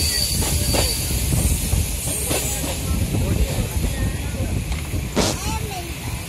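Train running, heard from on board: a steady rumble of wheels on rail, with a high wheel squeal that cuts off just after the start and a few sharp knocks, the clearest about five seconds in.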